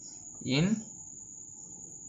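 A steady, high-pitched continuous tone that does not change, under one short spoken word about half a second in.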